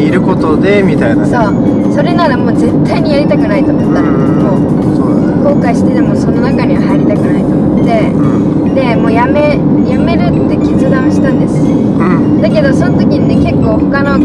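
A woman talking inside a moving car's cabin, over steady road and engine noise.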